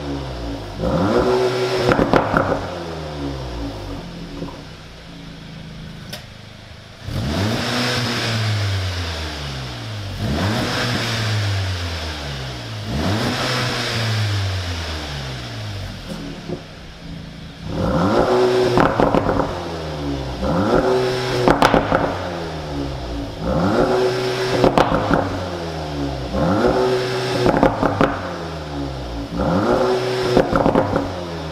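VW Golf 7.5 R's turbocharged 2.0-litre four-cylinder being revved while stationary through a 3.5-inch (89 mm) stainless straight-pipe exhaust fitted behind the petrol particulate filter. Two quick blips, a few seconds of idle, three longer revs rising and falling, then a run of quick blips about every two seconds with sharp cracks on the overrun.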